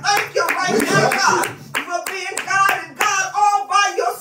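A woman singing a worship song into a microphone, over steady hand clapping that keeps time at about three claps a second. She holds a long, wavering note near the end.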